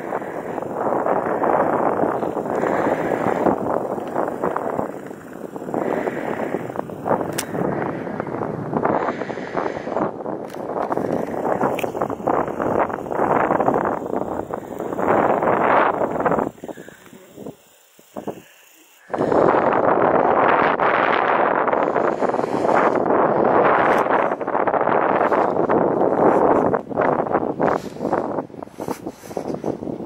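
Wind buffeting the camera microphone, a loud rough rushing that gusts up and down and drops away for about two seconds just past halfway.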